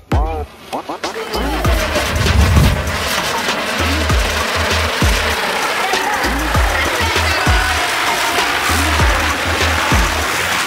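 Background music with a repeating bass beat and vocals, over a steady fizzing hiss from a ground spinner firework (chakri) that starts about a second and a half in.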